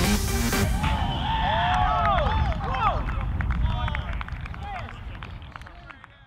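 Electronic dance music cuts off about half a second in, followed by several men shouting and cheering together in excited, rising-and-falling calls that fade away over the last few seconds.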